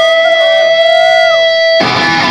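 Electric guitar holding a steady ringing note, with a second note wavering and bending beneath it. Near the end the full band comes in loud.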